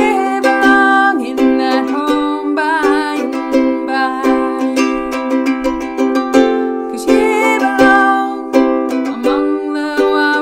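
A woman singing with vibrato on held notes, accompanying herself on a strummed ukulele.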